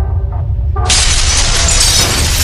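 A deep, steady rumble, with a sudden loud crash less than a second in that carries on as a long, hissing, crashing noise, like a dramatic sound effect over music.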